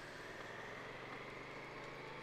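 Faint, steady engine hum under a low background hiss.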